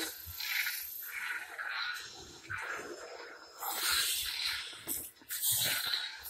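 A string of irregular hissing swooshes, several a second, that go with the swings of a toy lightsaber.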